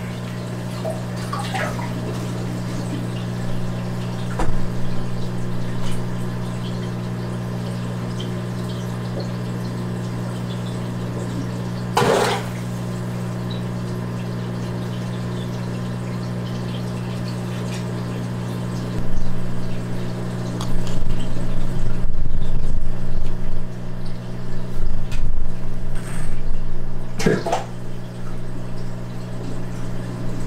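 Steady low hum of aquarium equipment with water moving, broken by a few sharp splashes at the surface, one about twelve seconds in and one near the end, as the fish strikes its food. Low bumps and rumbles come and go in the last third.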